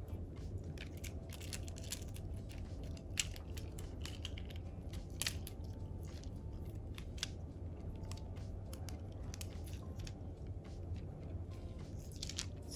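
Acrylic bubblegum beads on elastic cord being handled, giving faint scattered clicks and taps as the beads knock together. A steady low hum runs underneath.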